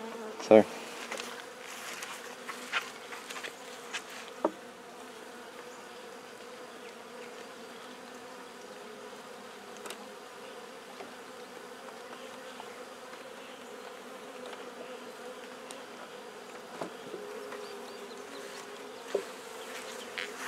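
Honey bees buzzing around an opened hive: a steady, even hum, with a couple of short light knocks along the way.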